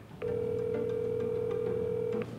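Ringback tone of an outgoing phone call over the phone's speaker: one steady ring lasting about two seconds while the line rings for an answer.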